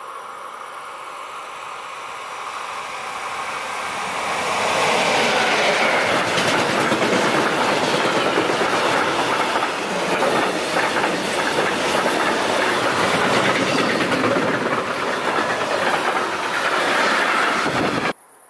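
Electric locomotive hauling a freight train of covered goods wagons past at speed. The wheel and rail noise builds over the first four seconds as it approaches, then holds as a loud, steady rush while the wagons roll by.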